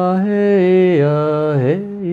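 A man's voice chanting one long held vowel line without words, sliding smoothly in pitch and dipping low about a second and a half in before rising again. It is a chant sung as a healing blessing.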